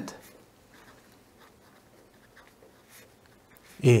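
Pen writing on paper: faint, irregular scratching strokes as a short formula is written out.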